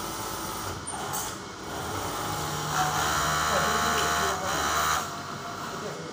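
Industrial overlock sewing machine running in a steady burst from about two seconds in, stopping at about five seconds, while fabric is stitched.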